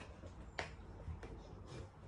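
A few short, sharp clicks over quiet room tone, the loudest about half a second in.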